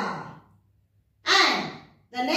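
A voice making drawn-out, breathy sounds that slide down in pitch: one trailing off in the first half second, then a short silence, then another starting about a second and a quarter in.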